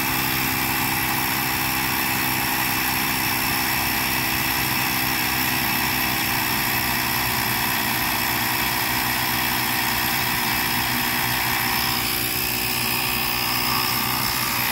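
Carsun cordless battery tyre inflator running steadily as its small electric compressor pumps air into a small wheel's tyre. Its tone changes slightly near the end as the pressure starts to build.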